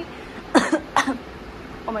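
A woman coughing twice, two short sharp coughs about half a second apart.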